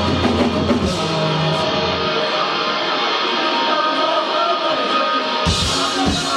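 Metalcore band playing live, amplified and loud. About two seconds in, the drums and bass drop out and only held guitar notes ring on. The full band with drums comes crashing back in near the end.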